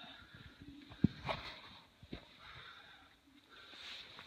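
A sharp knock about a second in and a lighter click about a second later, over faint breathy hiss.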